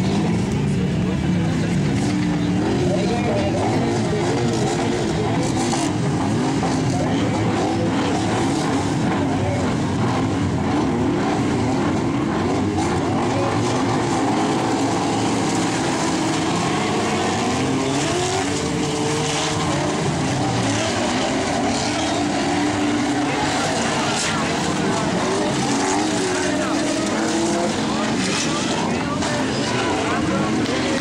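A field of stock cars, unmodified production cars over 1800 cc, with their engines running and revving together, the pitch wavering up and down throughout.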